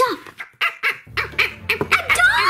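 A dog barking several times in quick, short barks.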